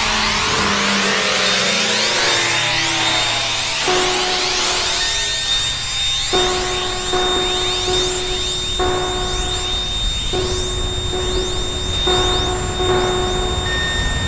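Experimental electronic music from an EMS Synthi VCS3 synthesizer and computer. It opens with many sweeping pitch glides over hiss. From about four seconds in, a held tone breaks off and restarts about once a second, over the hiss and a thin steady high whistle.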